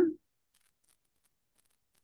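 A voice finishing a word at the very start, then near silence: an open call line with nothing else sounding.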